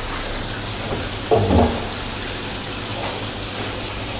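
Water pouring steadily from three wall spillway spouts into a koi pond, a continuous splashing rush. A brief low sound comes about a second and a half in.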